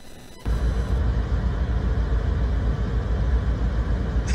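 Car driving, heard from inside the cabin on a phone: a steady low rumble of engine and road noise that cuts in abruptly about half a second in.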